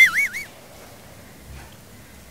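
A high-pitched warbling sound effect, its pitch wavering rapidly up and down, cutting off about half a second in; then quiet room tone.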